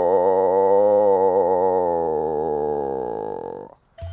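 Pickerel frog calling: one long, wavering call that slowly fades out near the end.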